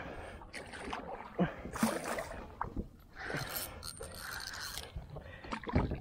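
Spinning reel and rod being worked against a heavy hooked fish just after a strike on a trolled lure, giving irregular mechanical bursts.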